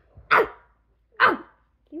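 A child barking in imitation of a dog, two short loud barks about a second apart.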